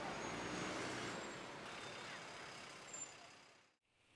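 Street traffic ambience: a steady wash of vehicle noise with engines and a short sharp sound about three seconds in, fading out near the end.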